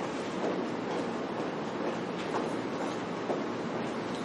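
Steady room noise, a constant even hiss and rumble, with a few faint clicks, likely from papers being handled.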